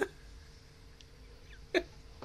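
A woman's brief laughing gasps, one right at the start and another shortly before the end, with a quiet stretch between.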